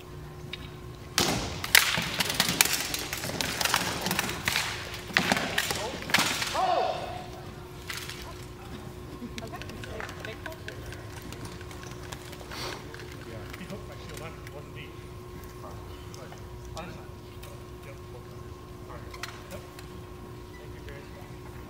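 Rattan swords striking armour and shields in a rapid flurry of sharp blows for about six seconds. After that come low crowd chatter and a steady hall hum.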